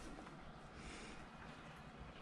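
Faint breathing of a border collie close by, with one stronger breath about a second in.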